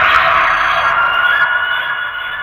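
Experimental electronic noise from a modular synthesizer: a dense, hissy high wash that thins after about a second into a few held high, siren-like tones.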